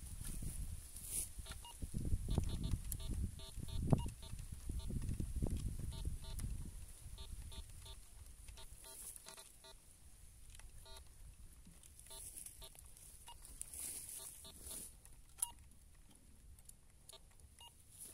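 Metal detector giving short, repeated electronic beeps as its search coil is swept over the dug hole, signalling a metal target in the soil. The beeps come in quick clusters through roughly the first ten seconds and then stop, over a low rumble of handling noise in the first six seconds.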